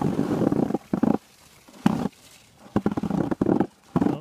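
Skis scraping over snow in rough, uneven bursts of noise, which stop for a while after about a second and come back near the end.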